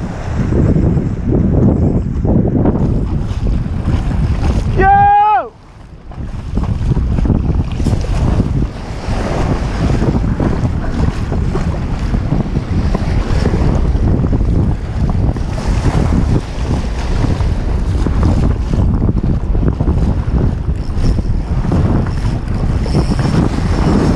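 Wind buffeting the action-camera microphone over shallow surf washing along the beach. About five seconds in comes one short pitched sound.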